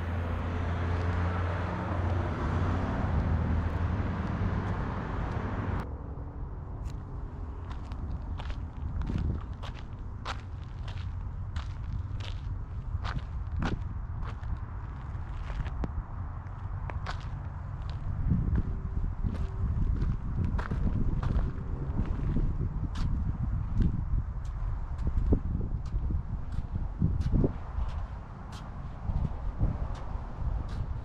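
Footsteps of a person walking at a steady pace, about two steps a second. For the first six seconds or so a steady low hum runs under them, then cuts off.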